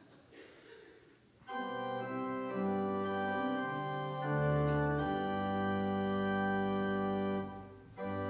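Pipe organ playing slow, held chords. It comes in about a second and a half in after a quiet moment, moves through a few chord changes and fades out just before the end.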